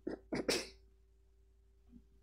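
A person's short, sudden breathy outburst: three quick bursts of breath within the first second, the last the loudest, then quiet.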